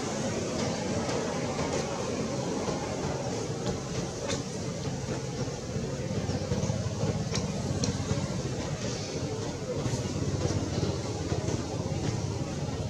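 Steady background din of indistinct voices over a continuous low rumble, with no distinct event standing out.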